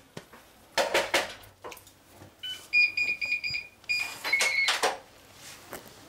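Digital door lock keypad beeping: a quick run of short beeps as a code is punched in, then a different short tone as it unlocks. Clicks and rustles from the latch come around it.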